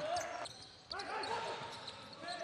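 Live basketball game sound in a hall: a ball bouncing on the court and players' voices, with a brief dip about half a second in.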